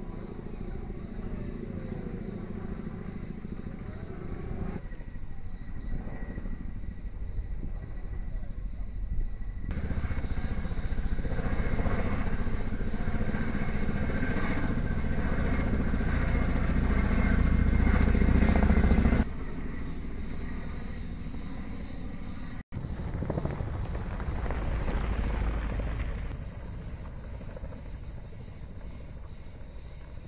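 Firefighting helicopter with an underslung water bucket flying nearby: a steady rotor and turbine drone that changes level abruptly several times, loudest for about ten seconds in the middle.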